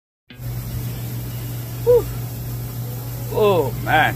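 A man's short wordless vocal sounds, one about two seconds in and a longer, falling one near the end, over a steady low hum. The sound cuts in abruptly just after the start.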